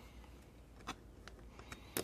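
Faint, scattered clicks from handling a slim power bank after its board has been slid back into the case, with one sharper click near the end.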